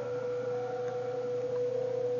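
Steady single pure tone from a speaker: off-air amateur-radio audio passed through a NESCAF audio bandpass filter narrowed down so that only a thin slice of the band comes through, over a light hiss. A fainter, higher tone joins briefly about half a second in.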